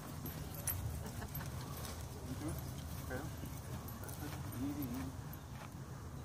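Wind rumbling on the microphone, with scattered light clicks and a few brief, faint vocal sounds.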